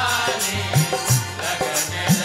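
Fiji kirtan devotional music: a hand drum plays bass strokes that bend upward in pitch, under steady sustained reed-like tones and jingling metal percussion keeping a brisk beat.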